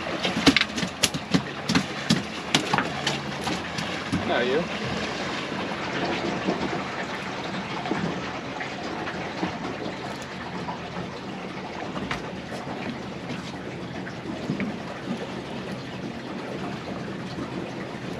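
Steady wind and water noise on an open boat, with a quick run of sharp clicks and knocks in the first three seconds.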